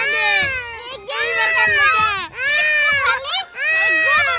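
Toddler crying in long, high-pitched wails, about one a second, with short catches of breath between them.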